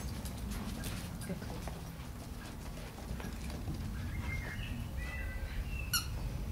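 Outdoor garden ambience: a steady low rumble with scattered light clicks, and a few short high chirps about four to five seconds in.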